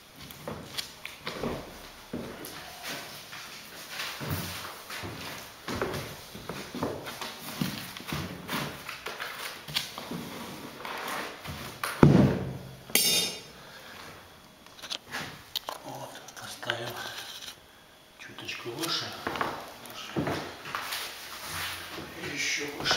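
Laminate floor planks being handled and fitted, with scattered knocks and rustles and a loud thump about twelve seconds in. Indistinct voices can be heard under it.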